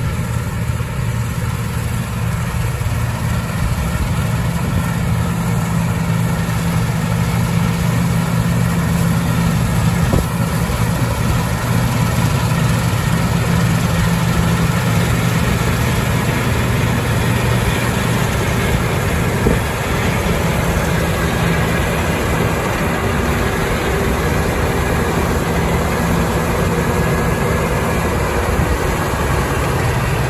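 CLAAS Lexion 760 TT combine harvester working through wheat: its Caterpillar C13 diesel engine drones steadily under load along with the running of its cutting and threshing gear. The sound grows louder over the first several seconds as the machine comes up close, then holds steady.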